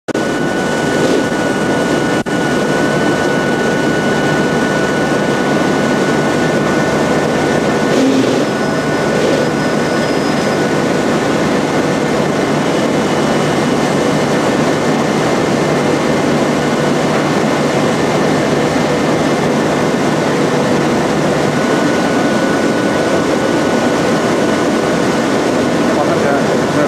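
Strecker paper sheeter running steadily: a continuous loud machine noise of the paper web feeding off the reels through the rollers and cutter, with a steady high whine over it.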